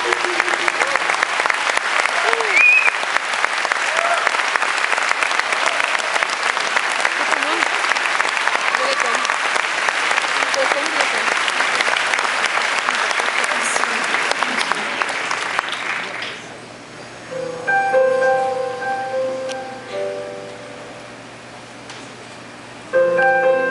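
Concert audience applauding, with a few whoops and cheers rising out of the clapping. The applause stops about sixteen seconds in, and a piano plays a few soft sustained notes and chords.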